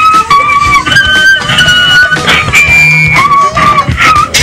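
A person whistling a little tune in clear held notes that step up and down in pitch, over background music with a beat.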